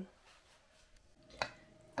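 Quiet room, broken by a single sharp click about one and a half seconds in, followed by a faint steady tone.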